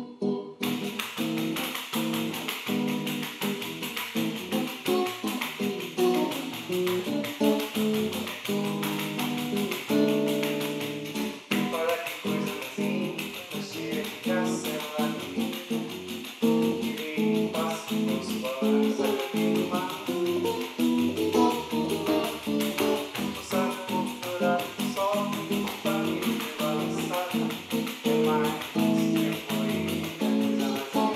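Nylon-string guitar strumming bossa nova chords in a steady syncopated rhythm, with a pandeiro's jingles shaking along.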